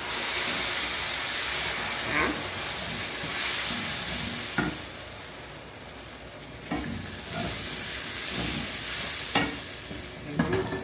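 Cream and gorgonzola sauce sizzling in a hot pan while a wooden spoon stirs it, with a few short scrapes of the spoon against the pan. The sizzle dies down for a moment about halfway through, then picks up again.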